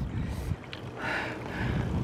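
A cyclist's heavy breathing while pedalling uphill: two breathy exhales about a second in. Low wind rumble on the microphone at the start.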